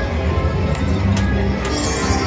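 Electronic music and chiming tones from an Open the Vault video slot machine as it pays out a line win, with three short clicks about half a second apart in the second half and a low steady rumble underneath.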